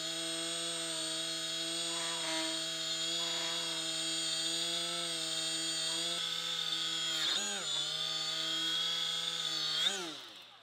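Die grinder running steadily at about 10,000 RPM, driving a cloth polishing pad charged with green compound over steel, with a steady whine. Its pitch sags briefly about seven and a half seconds in, then recovers, and the grinder is shut off at the very end.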